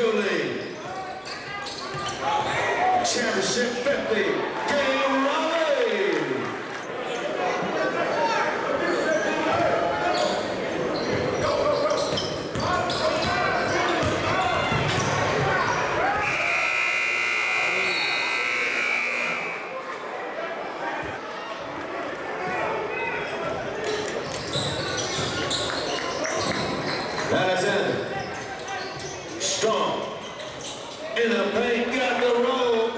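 Basketball game sound in a large gym: crowd voices and shouts, and a ball bouncing, echoing in the hall. About halfway through, a steady high buzzer tone sounds for about three seconds.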